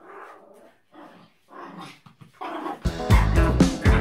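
Small Pomeranian-Spitz mix dog barking and growling in four short bursts, agitated by the sound of a spray bottle. Loud background music comes in near the end.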